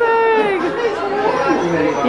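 Several voices talking over one another: party chatter, opening with one long drawn-out call that falls in pitch.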